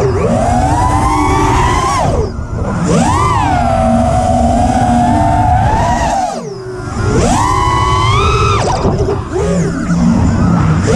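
FPV racing quadcopter's KO Demon Seed 2208 2550KV brushless motors and propellers whining, the pitch rising and falling with throttle. The throttle drops twice, about two and a half and six and a half seconds in, each time followed by a quick rise in pitch as it punches out again.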